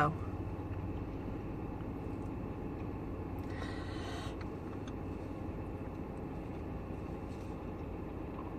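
Car running at idle, heard from inside the cabin as a steady low rumble, with a brief hiss about three and a half seconds in.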